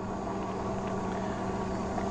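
Engwe EP-2 Pro fat-tire e-bike riding slowly under pedal assist: a steady hum from the rear hub motor and tyres, with an uneven low rumble of wind on the microphone.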